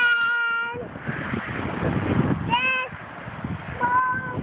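A young girl singing long, high held notes: one of nearly a second at the start, a shorter one past the middle and another at the end, with a rushing noise between them.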